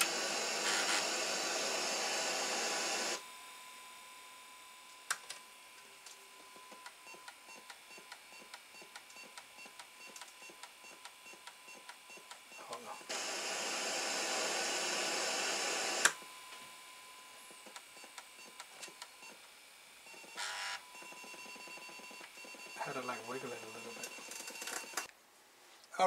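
Atari 1050 floppy disk drive whirring as its spindle motor spins for about three seconds, then faint, evenly spaced ticks and short beeps, then the motor whirring again for about three seconds and stopping with a click. The drive is booting a DOS disk and now loads it after its head tracks were greased.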